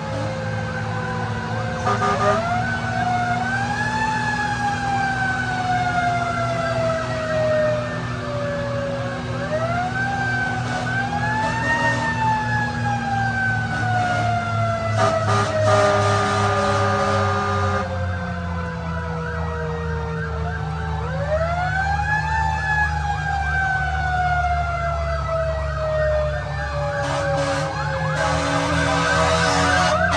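Fire engine's mechanical Q siren winding up and coasting down three times: each time the wail rises over a couple of seconds and then slowly falls, over the truck's steady engine. A steady-pitched horn blast sounds about fifteen seconds in and again near the end.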